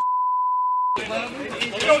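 A steady, pure censor bleep tone blanking out a swear word, lasting about a second and then cutting off abruptly, followed by shouting voices.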